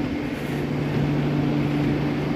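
Steady low mechanical hum of railway-station machinery, holding two constant low tones over a faint wash of noise.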